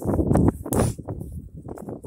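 Wind buffeting a phone's microphone, with rustling and knocking as the phone is handled and swung around; a short hiss comes just under a second in.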